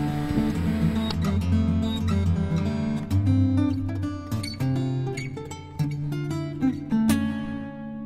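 Background music of an acoustic guitar, plucked and strummed, with a last chord struck near the end and left ringing.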